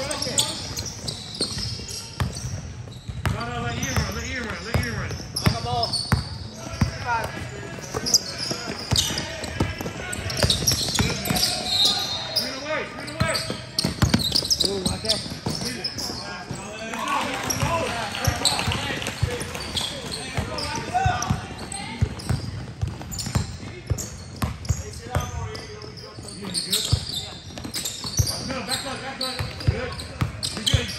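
A basketball bouncing on an indoor court during a game, with many sharp knocks, mixed with indistinct voices of players and onlookers echoing in the gym.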